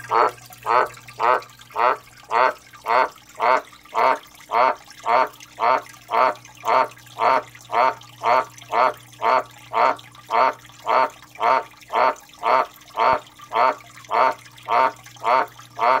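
Male Australian green tree frog (White's tree frog, Litoria caerulea) calling: a long, steady series of short, hoarse croaks at about two a second, each one much the same as the last.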